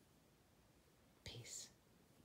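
Near silence, broken a little over a second in by a single brief whisper lasting about half a second.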